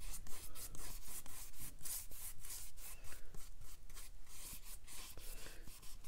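Wet paintbrush rubbing back and forth across cold-press cotton watercolor paper as a watercolor wash is laid down, a scratchy swish in quick repeated strokes, several a second.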